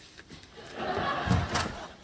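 Studio audience laughter swells and fades, with a couple of sharp thumps about a second and a half in.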